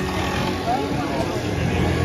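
Chatter of people at a street café, mixed with the steady engine hum of a motor scooter coming past.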